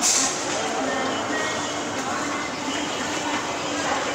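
Large supermarket's ambience: in-store background music under a steady wash of crowd noise and indistinct voices, with a brief hiss at the very start.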